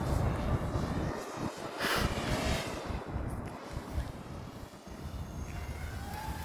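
Wind noise on the microphone, with the faint, slightly wavering whine of a small FPV drone's motors in the distance.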